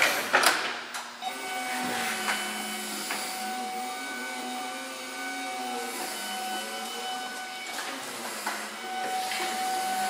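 Caterpillar forklift running: a steady whine with a lower tone that rises and falls as it moves, and a few knocks in the first second.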